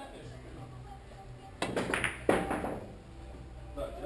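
A Russian billiards shot: the cue striking the large ball, then a sharp, loud ball-on-ball clack with a brief ring a little past two seconds in.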